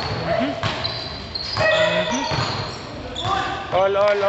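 Indoor basketball game: the ball bouncing on the court, short high squeaks of sneakers, and players calling out, with a shout of "oh, oh, oh" near the end.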